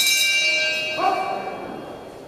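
Boxing ring bell struck once, a sharp metallic ring that fades away over about a second and a half, the signal that starts the round.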